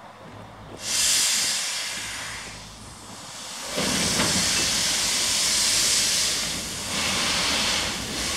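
A 760 mm narrow-gauge steam locomotive hissing steam while shunting. A sudden loud hiss comes about a second in and fades away, then a louder, fuller hiss with a low rumble starts at about four seconds and keeps going as the train moves.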